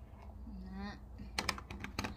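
A woman's short falling hum, followed by a quick run of sharp light clicks from hair-styling tools being handled.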